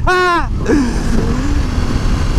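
Ducati XDiavel's V-twin engine running at highway speed under heavy wind rush on the helmet microphone, the engine note dipping slightly about two thirds of a second in and then holding steady.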